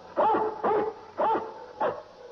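Cartoon dog barking four times in quick succession, about half a second apart.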